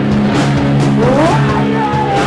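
Loud live rock band playing: sustained distorted guitar chords over drum hits. About a second in, a note slides up in pitch and is then held high.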